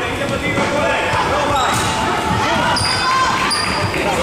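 Futsal ball being kicked and bouncing on a wooden sports-hall floor, under voices of players and spectators talking and shouting, echoing in the large hall. Two short high squeaks near the end.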